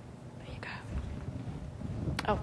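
A short breathy whisper close to a podium microphone about half a second in, over soft low thuds of handling noise at the podium.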